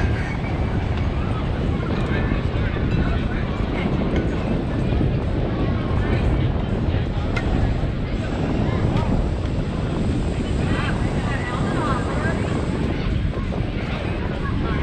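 Steady wind rumbling over the camera microphone, with distant, indistinct voices of players and coaches on an open ball field.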